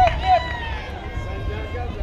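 Several voices calling out and cheering in wavering, sung-out tones over a steady low rumble of wind on the microphone; the sound cuts off abruptly at the very end.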